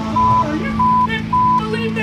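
Music and voices from a television segment's soundtrack, with a short high beep repeating every half second or so over a steady low hum.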